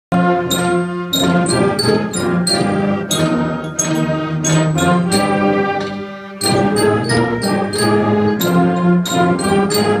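A youth concert band playing, with saxophones and low brass holding chords under regular sharp accents. The sound thins briefly about six seconds in, then the full band comes back in.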